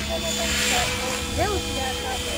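GAUI X7 radio-controlled model helicopter flying overhead, its rotor and motor sound steady with a brief pitch rise and fall about one and a half seconds in, mixed with background voices.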